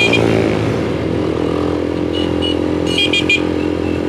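Motorstar Z200X engine running steadily at cruising speed, heard from the rider's seat over wind noise. Two quick runs of short, high-pitched beeps come in the second half.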